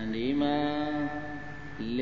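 A Buddhist monk's voice chanting in a sustained, sing-song recitation. He holds one long drawn-out note for over a second, it trails off, and a new chanted phrase begins near the end.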